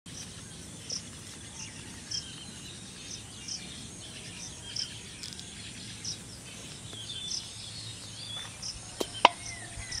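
Rural outdoor ambience: a bird repeats a short high chirp about three times every two seconds while other birds call now and then over a steady high insect drone. Two sharp clicks come near the end, the second louder.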